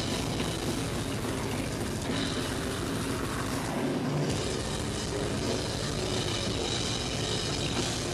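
A deathcore band playing live at full volume, with rapid bass-drum strikes under heavily distorted, down-tuned guitars, smeared into a dense roar by an overloaded camera microphone. The bass drops out briefly about four seconds in.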